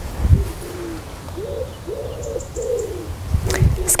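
A pigeon cooing, a repeated series of short low coos, over a low rumble, with a thump about a third of a second in and another shortly before the end.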